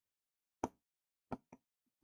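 Three short, sharp taps against otherwise gated silence, the last two close together.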